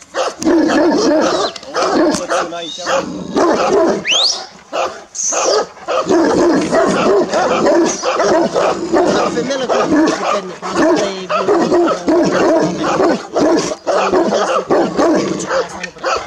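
Large black Romanian Raven Shepherd dogs (ciobănesc corb) barking over and over at the fence, the barks coming close together with only short pauses.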